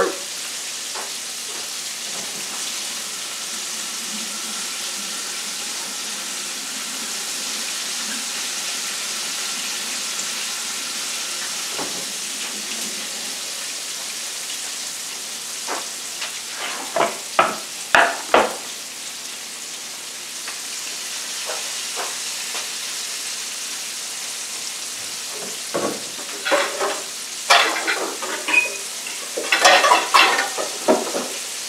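Food sizzling in a frying pan on the stove, a steady hiss throughout. A few sharp knocks come about halfway through and again near the end.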